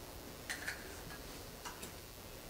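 Faint, light clicks and clinks in two pairs about a second apart, made by communion vessels being handled on the altar.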